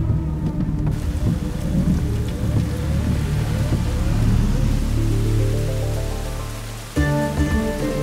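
Heavy rain pouring down with deep rolling thunder. Music rises underneath, and a louder music passage cuts in suddenly near the end.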